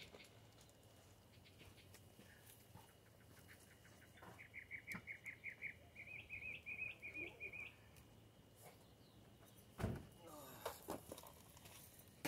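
A small bird singing faintly: a run of quick, evenly repeated chirps about four seconds in, then a slightly higher run with upward-flicking notes. A single thump near the end is the loudest sound.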